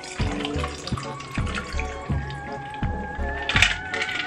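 Background music with a steady beat, over a mixed drink being poured from a cocktail shaker into a glass.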